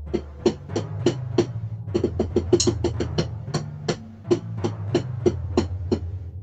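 Electronic acid/ambient track playing: a steady synth bass drone under evenly spaced drum hits, about three a second, with a quicker run of hits about two seconds in.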